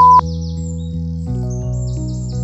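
Background music of soft sustained chords that change about a second and a half in, with quick high bird-like chirps laid over it. A short loud high beep sounds right at the start.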